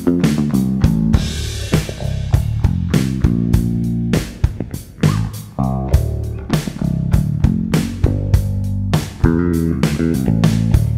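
Carvin LB76 six-string electric bass played fingerstyle: a continuous line of plucked notes, each with a sharp attack, some ringing over one another.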